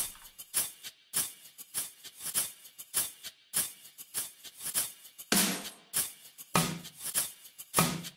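Shaker loop playing alone at 100 BPM: short, bright shakes repeating about three times a second, with a few fuller, louder strokes in the second half.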